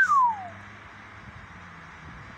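A single loud whistle-like call right at the start that rises briefly and then slides down in pitch for about half a second, over a steady low hum.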